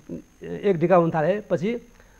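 Only speech: a man talking in Nepali, starting after a short pause.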